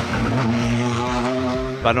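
Ford Fiesta rally car's engine pulling hard out of a hairpin, its note rising about half a second in and then holding steady under load. A man's voice cuts in just at the end.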